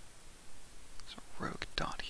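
A person speaking quietly, starting about a second in; before that only faint background hiss.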